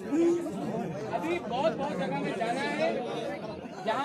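Crowd chatter: many people talking at once, a babble of overlapping voices with no single speaker standing out.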